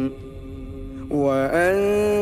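Solo male voice reciting the Quran in a melodic, chanted style. A long held note ends, and after a pause of about a second a new phrase starts, rising in pitch before settling into a long held note.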